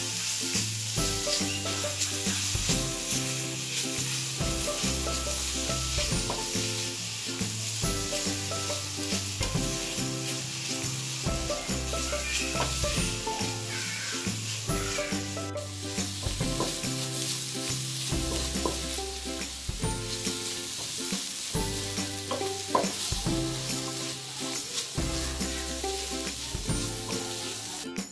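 Grated radish and masala sizzling in oil in a frying pan, with a steady hiss, while a wooden spatula stirs and scrapes through it.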